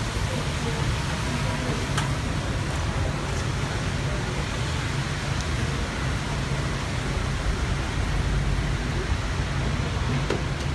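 Steady rumble and hiss of idling vehicles and traffic at a wet kerbside, with a faint click about two seconds in.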